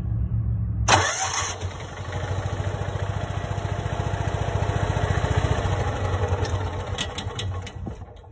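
Kawasaki FE290D single-cylinder engine cranked over, catching with a sudden burst about a second in and running with a rapid, uneven pulse, then fading out and dying near the end, with a few sharp clicks. It loses spark and stalls, the sign of a failing ignition coil whose internal timing control has given out even though it still sparks.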